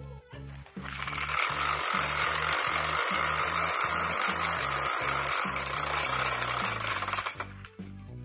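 A rapid, dense rattle, most likely the BeanBoozled spinner app's sound as its wheel spins on a phone held close. It starts about a second in and stops shortly before the end, over background music with a steady beat.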